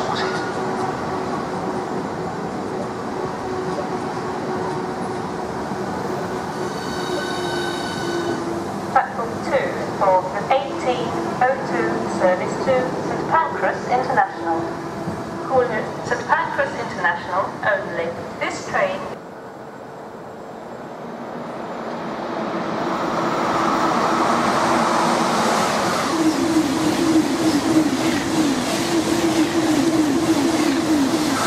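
High-speed electric trains in a station: a Southeastern Class 395 Javelin's running noise with a steady hum, and from about two-thirds of the way through a Eurostar Class 373 approaching and passing through at speed, building to a loud, pulsing rush of wheels and air at the end. Speech is heard in the middle.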